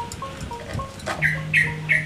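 Three short, harsh calls from a caged prinia (ciblek) in the last second, made as the bird is being grabbed by hand inside its cage. Background music with a slow stepping melody plays underneath.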